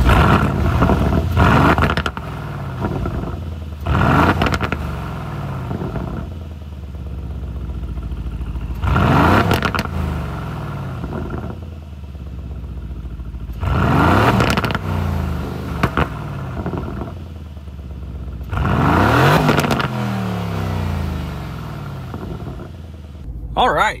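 2019 Aston Martin Vantage's twin-turbo V8 heard from behind the exhaust, idling and revved in short blips about every five seconds. Each rev rises and falls back to idle with exhaust crackles and pops, and the turbos are audible.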